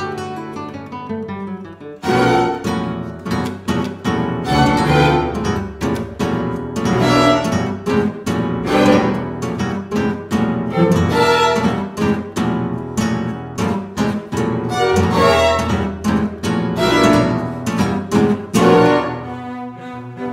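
Two classical guitars with a string ensemble of violins, cello and double bass playing a piece of chamber music. The full ensemble comes in loudly about two seconds in, with busy rhythmic plucked and bowed playing, and it eases off near the end.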